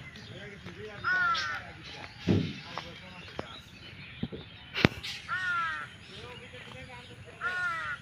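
A bird calls three times, each call arched and about half a second long, spaced a few seconds apart. A single sharp click comes just before the second call.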